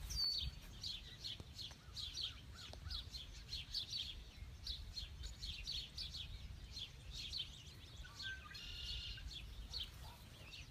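Small birds chirping over and over, quick, short, falling chirps several a second, with a longer call near the end. A low rumble runs underneath.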